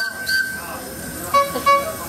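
Miniature live-steam locomotive whistle: a steady high note at the start, then two short toots close together about a second and a half in.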